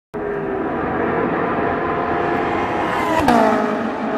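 KTM X-Bow's engine pulling hard, its pitch climbing, then a sharp pop about three seconds in as the car passes close and the pitch drops abruptly, the sound fading after.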